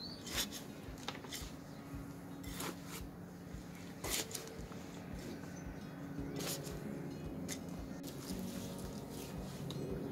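Potting mix, peat moss, sheep pellets and granular fertiliser being mixed by hand in a polystyrene planter box: soft, irregular rustling and scraping of the soil, with occasional sharper scrapes.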